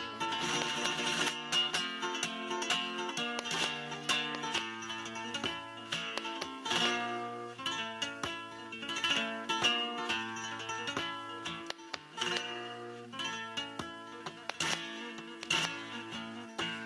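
Solo flamenco guitar playing in bulerías por soleá, mixing sharp strummed chords with single-note melodic runs.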